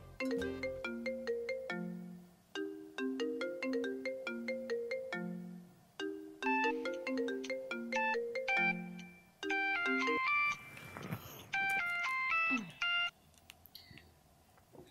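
Mobile phone ringtone: a short melody of quick notes repeating phrase after phrase, with brief gaps, until it cuts off near the end as the call is answered.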